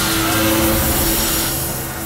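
Horror film soundtrack: a loud rushing roar laid over held music tones and a low rumble, the roar dropping away about one and a half seconds in.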